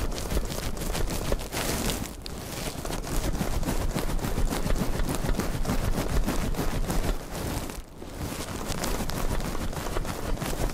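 Hand pump of a kerosene blower burner being stroked to pressurise its fuel tank, heard among dense, irregular crackling noise that dips briefly about eight seconds in.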